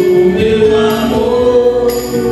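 Live band music: male voices singing together over electronic keyboard accompaniment, with held notes and a cymbal-like hit near the end.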